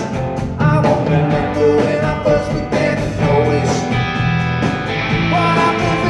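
Live rock band playing: two electric guitars over a drum kit, with sustained guitar notes and steady drum hits.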